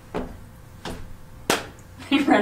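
Three short, sharp taps from hands handling a small object, about half a second apart, the last the loudest.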